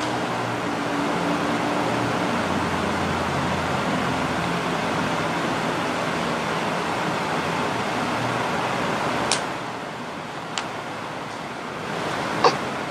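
Steady rushing background noise with a faint low hum. Two sharp clicks come about nine and ten and a half seconds in.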